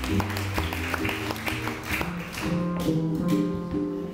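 Live jazz guitar and double bass playing together: plucked chords and single notes on an archtop guitar over a plucked double bass line.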